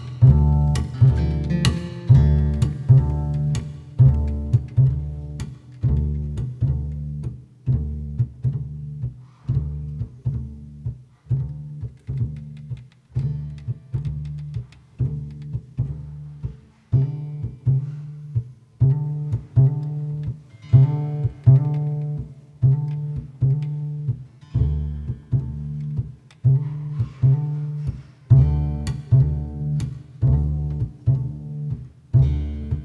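Double bass played pizzicato: a steady line of low plucked notes, each ringing and dying away before the next. Faint higher plucked notes from other instruments come in at times above it.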